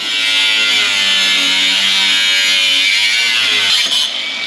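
Angle grinder with a cutting disc slicing through steel plate: a loud, steady high-pitched grinding whine whose pitch wavers slightly as the disc bites.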